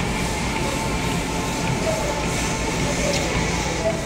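Treadmill running with a steady rumble from its belt and motor while someone walks on it.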